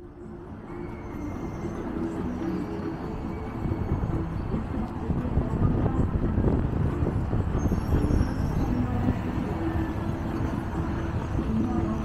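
Steady outdoor city noise of road traffic with a low rumble, growing louder over the first few seconds.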